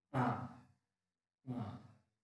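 Two brief vocal sounds from a person, each about half a second long and about a second apart, the first louder.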